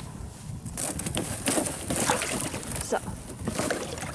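Thin ice on a plastic water trough being broken up by a bare hand: irregular cracking and clicking with water sloshing, starting about a second in.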